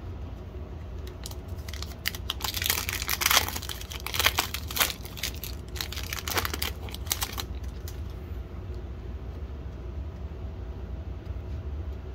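Plastic foil wrapper of a 2022 Donruss Optic football card pack being torn open and crinkled, in a run of crackling bursts lasting about five seconds from about two seconds in.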